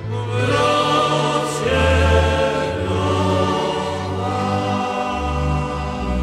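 Background music: sustained choir-like chords over a low bass line that moves to a new note every second or so.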